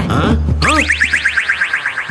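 Cartoon-style comedy sound effect: a rapid run of short rising electronic chirps, about a dozen a second, starting about half a second in and running for over a second.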